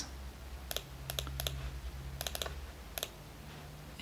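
Light clicks of typing on a computer keyboard, about ten in all and several in quick pairs, over a faint steady low hum.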